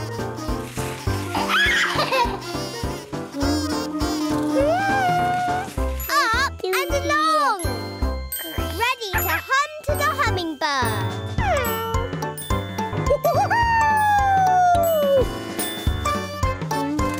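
Children's cartoon soundtrack: bouncy music with a tinkling, jingly melody over a steady bass, with a baby's wordless babbling and squeals laid over it. Sliding pitch effects run through it, with one long falling glide near the end.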